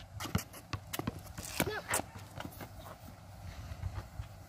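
Basketball bouncing on a hard outdoor court, a string of irregular sharp thuds.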